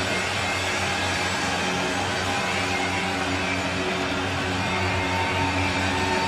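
Live electronic band music: a steady, held drone of sustained tones, with no vocals.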